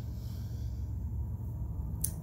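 Steady low rumble of truck traffic coming in through an open window, with a faint deep breath over it.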